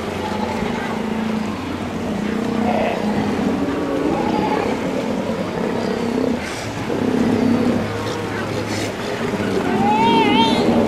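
Motorboat engine running with a steady low hum, under indistinct voices.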